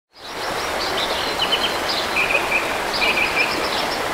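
Forest ambience: small birds chirping and trilling in short high calls over a steady rush of background noise, fading in at the start.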